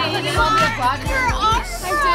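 Women's excited voices and laughter over background music with a thumping beat.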